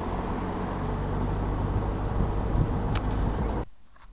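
Sailboat's inboard auxiliary engine running steadily as the boat motors along the canal with its sails furled. The sound cuts off suddenly near the end, leaving only faint outdoor background.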